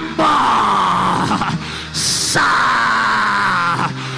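A man's drawn-out wordless cries into a microphone, groaning in prayer: two long held calls, the first sliding down in pitch, with a brief hiss of breath between them, over soft background music.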